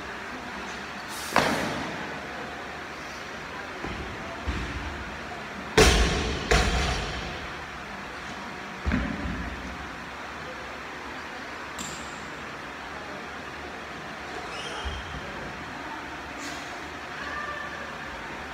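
Loaded barbell with bumper plates dropped and set down on a gym floor: a series of heavy thuds, the loudest twice around six seconds in, each echoing in a large hall over a steady background hum.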